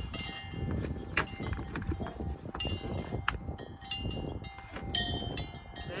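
Plastic bucket of packed snow being handled and scraped, with two sharp knocks, about a second and about three seconds in. A few brief high ringing tones come and go.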